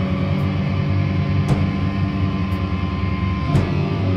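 Live punk band playing loud, distorted electric guitar and bass, with a held high note and two cymbal hits, one about one and a half seconds in and one near the end.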